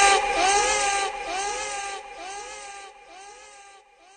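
A single pitched cry repeated over and over by an echo effect, about every two thirds of a second, each repeat fainter until it dies away near the end.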